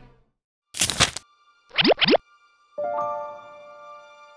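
Dub sound effects: a short harsh screech-like noise about a second in, then two quick rising swoops, then music notes begin a little before three seconds.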